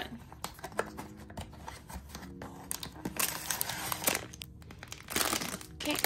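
A thin printed plastic blind-box bag and the cardboard box crinkling and rustling as they are handled, in irregular crackly bursts. The bursts are densest around the middle and again about five seconds in.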